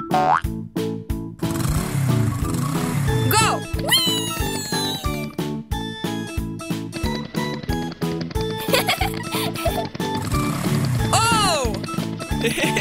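Upbeat children's cartoon background music with a steady beat, overlaid with springy, pitch-bending cartoon sound effects about three seconds in and again near the end.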